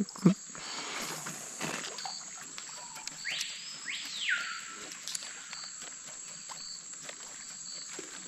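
Quiet riverside forest ambience with a steady high drone. About three seconds in, a bird gives a loud sweeping call that rises and falls back in two overlapping arches, lasting about a second.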